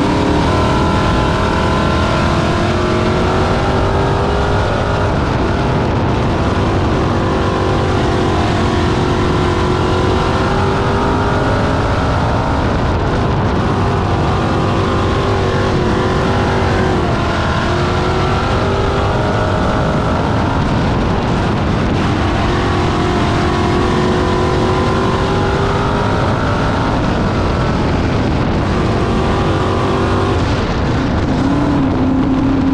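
Dirt-track race car's engine at racing speed, heard from inside the cockpit, its revs climbing along the straights and dropping back into the turns, over and over as it laps.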